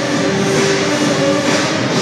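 Routine accompaniment music playing steadily: a dense passage of sustained instrumental tones.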